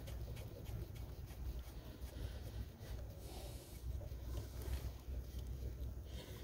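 Faint rustling and small scrapes of an arm and hand working among engine-bay hoses and wiring while the transmission check plug is threaded in by hand, over a steady low rumble.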